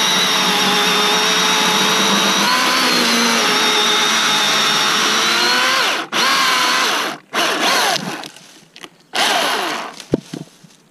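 Milwaukee M18 cordless chainsaw cutting through a log, its electric motor whining steadily under load. About six seconds in the trigger is let off and squeezed again in short blips, the chain speeding up and then spinning down with a falling whine each time.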